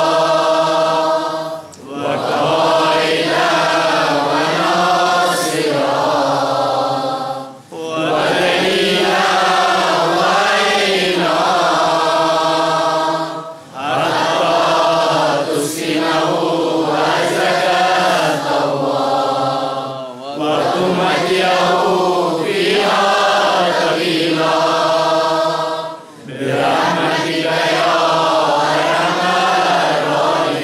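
A large gathering reciting together in unison, a group chant in Urdu/Arabic style. It runs in repeated phrases of about six seconds, with a brief pause for breath between each.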